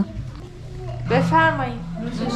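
A person's voice making one drawn-out vocal sound about a second in, rising and then falling in pitch, over a low steady hum.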